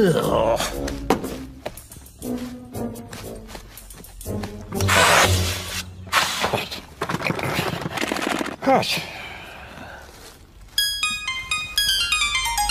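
Cartoon soundtrack. It opens with a wordless voice sounding a falling cry. Two long bursts of hissing noise follow in the middle, and music of quick, plinking keyboard notes begins near the end.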